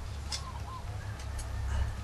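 Faint clicks and handling of electrical wires being pushed into a light fixture's junction box, over a low steady rumble.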